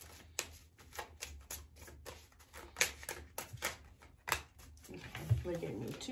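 Tarot cards being shuffled by hand, a run of short, irregular card clicks and snaps. A brief low vocal sound comes near the end.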